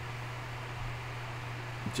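Steady background hiss with a constant low hum underneath: room tone.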